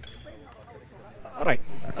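Faint background murmur of a live outdoor news feed, then a man's short spoken word about one and a half seconds in.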